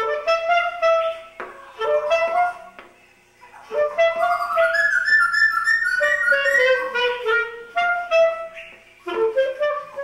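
Clarinet playing phrases of held notes, with a short pause about three seconds in, while a white-crested laughing thrush sings along with it.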